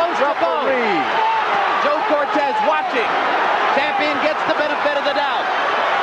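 Boxing arena crowd cheering and yelling during a heavy exchange, many voices overlapping at once.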